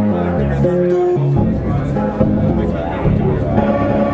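General MIDI instrument sounds from the Expert Sleepers General CV prototype Eurorack module, played as a sequence of stepping pitched notes. About a second and a half in the patch changes to a fuller, denser sound.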